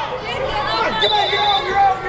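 Overlapping voices of coaches and onlookers calling out and chattering in a gym hall, with a brief high steady tone about a second in.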